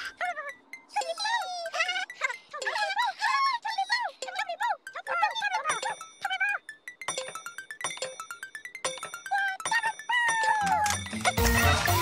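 Children's TV soundtrack: high, squeaky gliding character voices babbling over tinkly chime notes. Near the end a full children's music tune with a bass line comes in.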